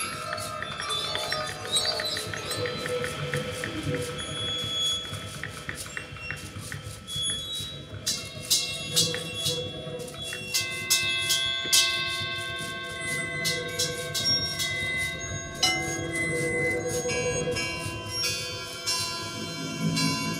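Free-improvised music built on struck metal percussion: bell- and chime-like tones that ring on and overlap. A fast run of light taps comes early, and from about the middle onward come many sharp mallet strikes.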